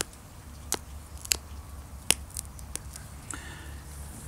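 A copper pressure flaker pressing small flakes off the edge of an ancient Roman glass arrowhead: several short, sharp, high clicks spread through, each a flake popping free.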